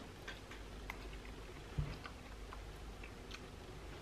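Faint chewing of a soft mouthful of curry and rice with the mouth closed: scattered small wet clicks, with one soft low thump a little under two seconds in.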